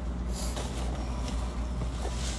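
Steady low hum of indoor background noise, with a brief rustle about half a second in.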